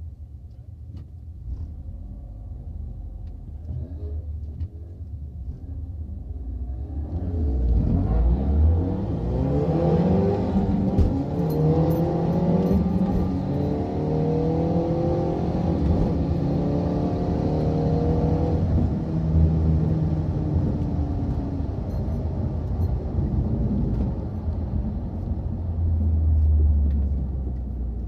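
Stage 2 tuned 2.0 TSI turbocharged four-cylinder of a MKV Volkswagen Jetta, heard from inside the cabin. It idles at the line; about seven seconds in it launches, a launch that bogged badly, then pulls hard with the revs climbing again and again through upshifts for about ten seconds. Then the engine drops back as the car slows.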